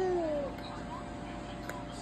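A baby's high-pitched coo: one drawn-out vocal sound that falls slightly in pitch and ends about half a second in.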